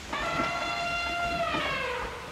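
A single long, high, reedy squeak held steady for almost two seconds, dipping slightly in pitch at the end: the squeaking voice of a puppet worm living in a trash can.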